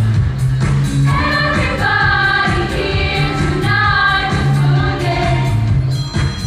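Girls' show choir singing in harmony over a band backing with a strong bass line and a steady beat. The voices swell in about a second in.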